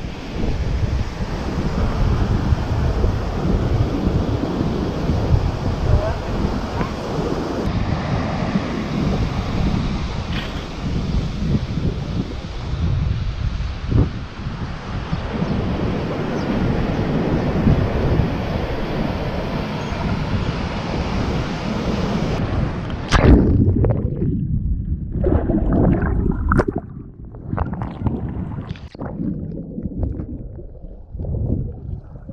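Ocean surf with wind buffeting the microphone. About three-quarters of the way through, after a knock, the sound turns muffled and dull as the camera goes under the water, leaving uneven underwater churning.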